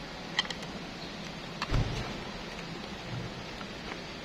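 Handling of a plastic car aircon blower-motor housing and a screwdriver during disassembly: a few light clicks, then a dull thump a little under two seconds in and a softer knock about a second later, over steady background noise.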